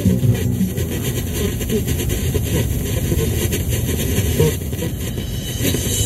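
Steady road and engine rumble of a moving car, heard from inside the cabin, with music dropping out near the start and coming back at the very end.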